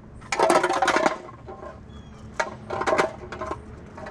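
Loose metal objects clinking and rattling in irregular bursts: a longer clatter about a second long near the start, then shorter ones around two and a half to three and a half seconds in.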